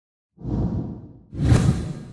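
Two whoosh sound effects of an animated title, about a second apart, the second one louder.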